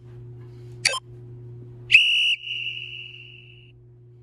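Electronic workout timer counting down: two short ticks a second apart, then a long, high, steady beep about two seconds in that fades out, signalling the start of a timed plank.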